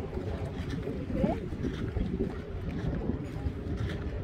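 Wind rumbling on a phone microphone on an open ocean pier, with faint voices of people in the distance.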